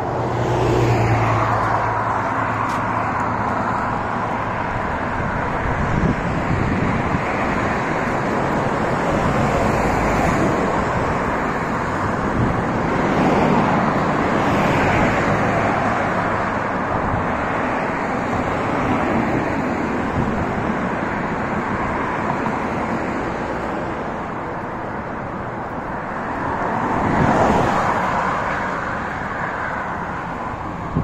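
Road traffic on a multi-lane street: a steady wash of car noise, with cars passing and swelling louder several times, most strongly about a second in and again near the end.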